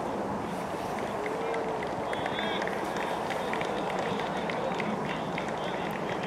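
A group of footballers clapping their hands in welcome: scattered claps building from about two seconds in, over a steady background hiss and indistinct voices.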